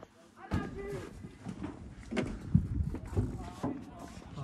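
Voices of players and spectators calling out across an outdoor football pitch, with a few sharp thuds about halfway through.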